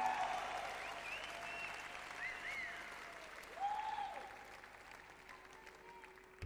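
Concert audience applauding and cheering, fading away steadily.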